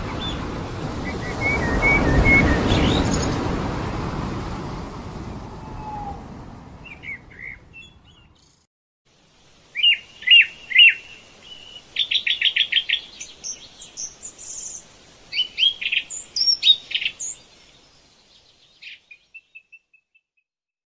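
A broad rushing noise, like surf or wind, swells and fades out over the first eight seconds. Then birds chirp and trill in quick runs of high notes for about ten seconds, fading near the end.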